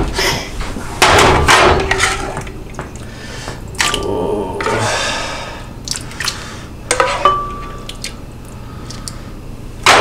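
Kitchen clatter of pots and dishes being handled: scrapes and knocks, with two short metallic clinks that ring briefly.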